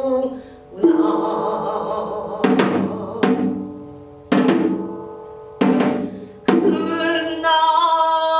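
A janggu (Korean hourglass drum) struck with a stick several times at uneven intervals, each stroke dying away. Between the strokes a woman's singing voice holds long notes, and the voice comes in more strongly near the end.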